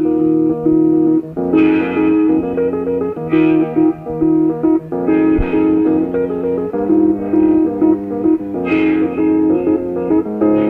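Live rock band playing a blues number, with a guitar line of held and moving notes over the band and a few sharp accents, the strongest near the start and close to the end.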